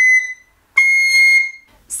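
Boxwood soprano recorder (Mollenhauer) playing two long, clear, very high notes with a short break between them, the second a little higher. They are played with a tiny thumb-hole opening and a cold, fast, supported airstream, which lets the high note speak.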